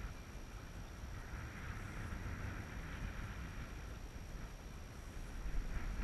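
Wind buffeting the microphone, a low steady rumble, with a faint hiss that swells and fades through the middle.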